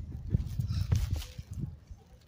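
Footsteps of a person walking on a brick sidewalk, heard as several uneven low thumps, with the handheld phone's microphone being jostled as it is carried.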